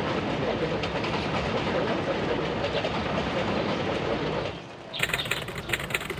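A train running through the station: a steady, loud rumble with a rapid clatter of wheels on the rails. It fades out about four and a half seconds in. Near the end, brighter chirping sounds take over.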